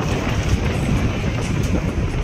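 Steady road and wind noise of a vehicle driving along a road, heard from inside it: a continuous rushing noise over a low rumble.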